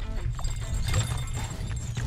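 Ice-fishing rod and its tip-up holder knocking and clattering against the ice as a fish yanks the rod down into the hole. Heavy wind rumble on the microphone and background music run underneath.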